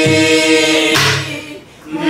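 A woman singing a Korean Namdo folk song in a full, wavering voice, holding a long note, with strokes on a buk barrel drum at the start and about a second in. The voice then breaks off for a moment to take breath before the next phrase begins.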